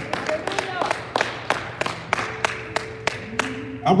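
Congregation clapping in a loose, uneven rhythm, a few claps a second, echoing in a large hall, with scattered voices underneath. A faint held tone comes in during the second half.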